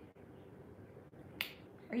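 A single sharp finger snap about one and a half seconds in, over quiet room tone.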